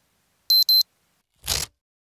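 Electronic sound effect: a quick double beep, high-pitched, about half a second in, followed by a short whoosh about a second and a half in.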